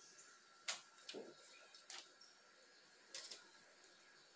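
A few faint, scattered taps and clicks from a cat climbing and pawing at the bars of a clothes drying rack hung with clothespins.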